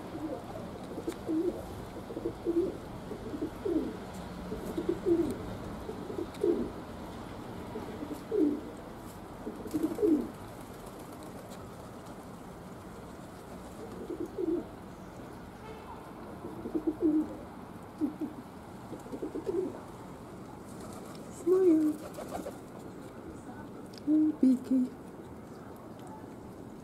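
Pigeon cooing: a run of short, low coos, one every second or two, with a pause of a few seconds midway.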